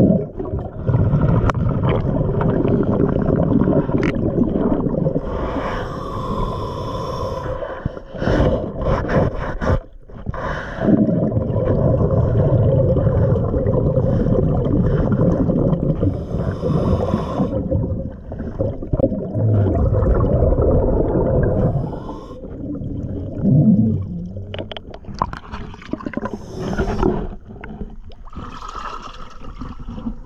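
A diver breathing through a regulator underwater: long, low bubbling exhalations alternating with shorter hissing inhalations, quieter over the last few seconds.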